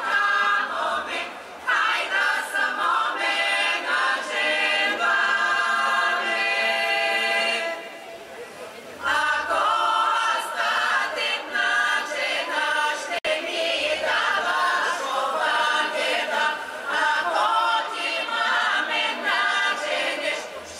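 Women's folk choir singing a Bulgarian folk song in several voices, with a short break in the singing about eight seconds in.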